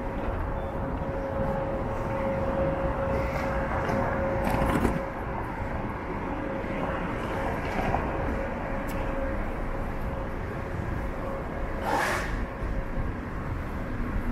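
City street ambience: steady road traffic noise with a thin steady tone through most of it. Two brief louder noises stand out, one about five seconds in and one near the end.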